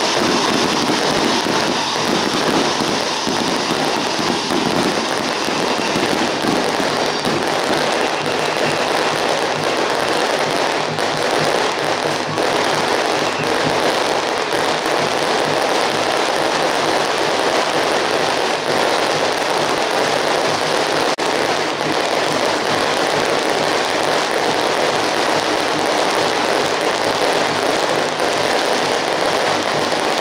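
Strings of firecrackers going off continuously in a dense, steady crackle.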